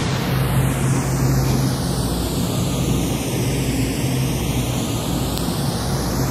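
Steady rushing noise with a low hum under it and no voices. A hollow sweep in its tone slides slowly down and back up over the few seconds.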